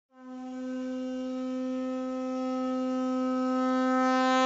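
A conch shell (shankha) blown in one long, steady, unwavering note that grows gradually louder.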